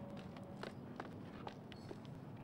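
A man's footsteps on pavement, about two steps a second, over a steady low hum of night ambience.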